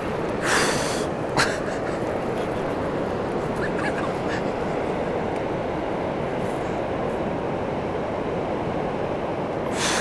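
Steady rush of a large, fast-flowing river, with three brief hissing bursts: about half a second in, again about a second later, and once near the end.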